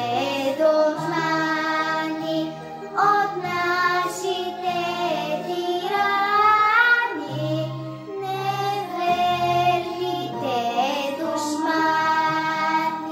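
A young girl singing a Bulgarian song in Bulgarian over an instrumental backing track. Her voice holds long notes and glides up in pitch a few times.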